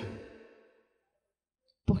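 A pause in speech: a woman's voice trails off with room echo, then near silence for over a second before she speaks again near the end.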